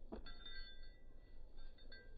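A single brief knock as a German Shepherd leaps and snaps a plastic frisbee out of the air, followed by faint high, clear tones that come and go.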